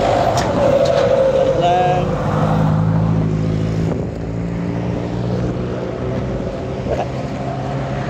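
Road traffic close by: a car's engine running as it drives past at first, then a steady low engine hum from vehicles at the junction.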